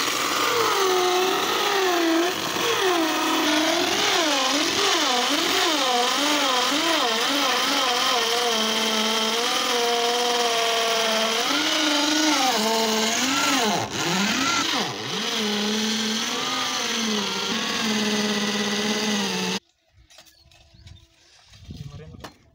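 Corded electric drill running as it bores into old wood. Its whine wavers up and down in pitch as the bit bites, sags twice in the second half, then stops abruptly near the end.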